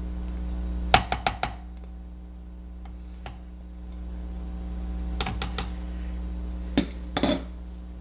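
Plastic spatula knocking and scraping against a plastic tub and measuring jug as solid shea butter is scooped into hot melted oils: a few short clusters of sharp taps, about a second in, around the middle and near the end, over a steady low hum.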